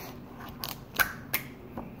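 Fingers working the plastic nozzle and seal on top of a new Reddi-wip whipped cream can to open it, making a few sharp clicks and snaps, the loudest about halfway through.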